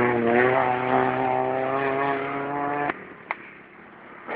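Small rally car engine held at high revs under full throttle, its note creeping slightly up in pitch, then cut off abruptly about three seconds in as the throttle is shut. A sharp crack follows.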